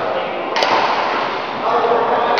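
People talking in a large, echoing sports hall, with one sharp click a little after a quarter of the way in.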